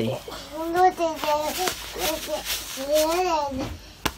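A young child's voice: several short, high-pitched phrases that rise and fall in pitch.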